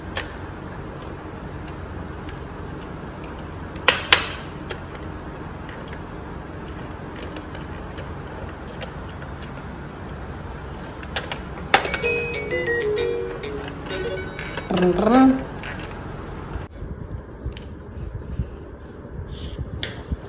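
Electronic toy airplane playing a short beeping tune about midway, with a couple of sharp plastic clicks before it, over steady background hiss.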